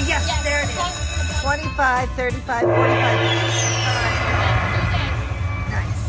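Dragon Link slot machine's electronic game sounds: short chiming tones as the reels stop, then from about two and a half seconds in a sustained jingle with a high falling sweep as the bonus feature triggers.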